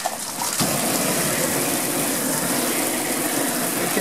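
Water spraying from a garden hose: a steady rush that grows louder about half a second in.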